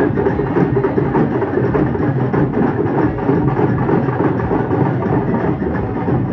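Street procession drums beaten loud and fast in a dense, unbroken rhythm, with a crowd's noise under them.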